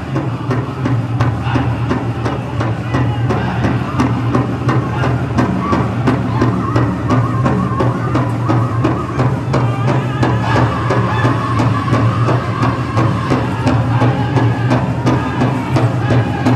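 Powwow drum group beating a large shared drum in a steady, even beat while the singers chant a jingle-dress contest song; the high singing comes through more strongly about halfway through.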